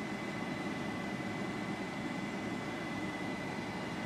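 Steady, even whir of a small 12-volt cooling fan in a Tesla coil driver box, with a faint steady high tone over it; the coil itself is not yet running.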